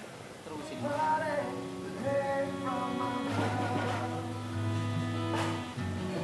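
Acoustic guitar playing held, ringing chords that start about a second in, over a steady low bass note, with a voice singing a few bending notes along with it.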